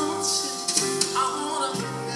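Live band playing an R&B ballad: sustained keyboard chords and cymbals under a male singer's voice.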